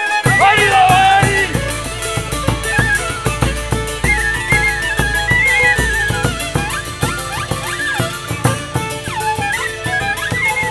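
Hutsul folk band playing a lively hutsulka dance tune: fiddle leading, with a small wooden pipe (sopilka) and tsymbaly (hammered dulcimer), over steady beats of a large drum with a cymbal on top. The drum and full band come in just at the start, after a solo fiddle lead-in.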